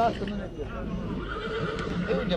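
A horse whinnying: a falling call at the start and a thin, high, held call in the second half, with people talking in the background.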